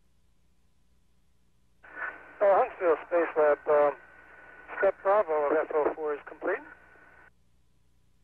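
A voice over a narrow-band radio communications loop, speaking in two short phrases, with a steady whistle tone under it while the channel is open. The transmission cuts in about two seconds in and cuts off shortly before the end.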